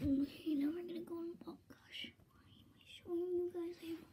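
A girl's soft, breathy voice holding a few steady notes without words, in two short phrases with a pause between them.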